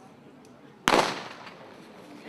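A starting pistol fired once, a little under a second in: a single sharp shot with a short ringing tail. It is the start signal for the sprint.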